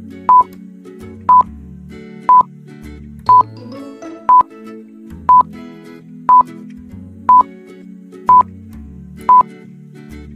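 Countdown timer beeps: ten short, high electronic beeps, one every second, over soft background music.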